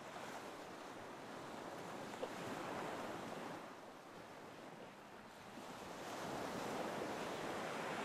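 Faint ocean surf: gentle waves washing on a shore. The wash swells about two seconds in, eases off in the middle, and builds again near the end.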